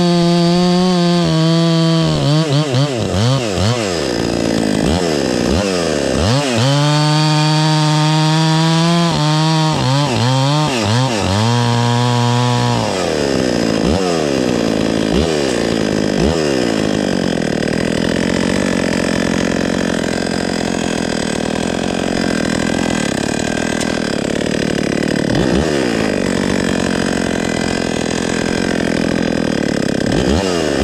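Husqvarna 266 XP two-stroke chainsaw cutting a log at full throttle. Its engine pitch repeatedly sags and climbs as the chain bites and frees, and from about halfway the note turns rougher and less steady. It is a saw that is not running well on its first real run.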